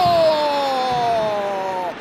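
A football commentator's long, drawn-out goal call: one held shout slowly falling in pitch, cut off just before the end, as a goal is scored.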